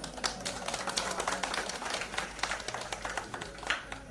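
A small crowd applauding: a dense, irregular patter of hand claps.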